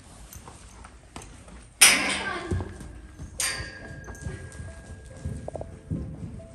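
A buckskin drum horse (Friesian/Clydesdale/Gypsy cross) turned loose on sand footing, his hooves striking as he moves off, with a sharp loud burst about two seconds in. A held tone of background music comes in during the second half.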